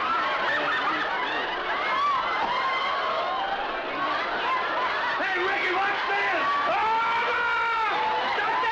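Studio audience laughing.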